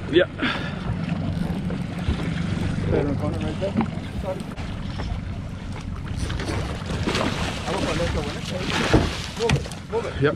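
Twin 115 hp outboard motors idling steadily, a low hum under wind noise on the microphone, with a sharp knock near the end.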